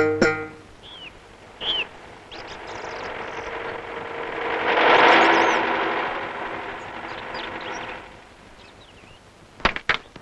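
A car approaching and passing, its noise swelling to a peak about halfway and then fading, with birds chirping. Two sharp knocks near the end.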